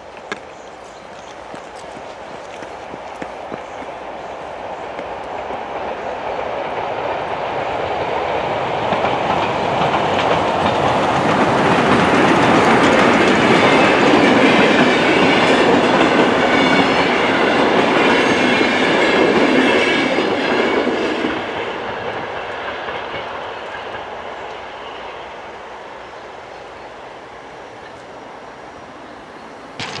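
Museum train hauled by Finnish Dv15 and Dv16 diesel locomotives passing over a level crossing. The wheels clatter over the rail joints; the sound swells as the train approaches, is loudest while the carriages go by, then fades away.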